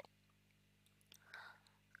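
Near silence, with a faint short breath from the speaker a little past halfway.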